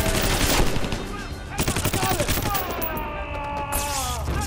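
Bursts of rapid automatic rifle fire, one at the start and another in the middle. In the second half a voice is yelling in long, held cries.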